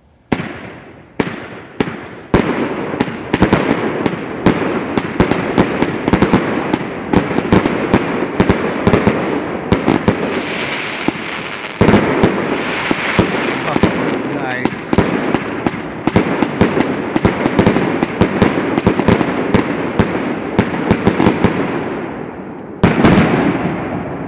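A 50-shot fireworks cake firing nonstop, its shots and hard-hitting aerial breaks coming thick and fast. There is a brief lull near the end, then a last volley.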